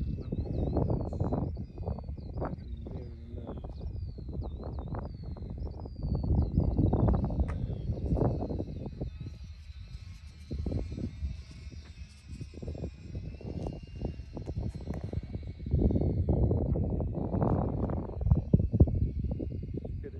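Gusty wind buffeting the microphone, with the faint high whine of a UMX Twin Otter model plane's twin electric motors as it passes closest about halfway through. Small birds chirp in the first few seconds.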